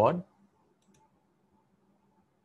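Faint computer mouse clicking about a second in, against a quiet room.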